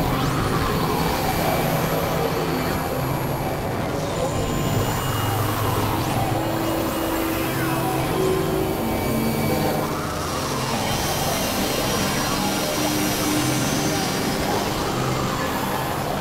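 Experimental electronic noise music: dense, steady synthesizer drones and noise, with gliding tones that sweep up and down every few seconds.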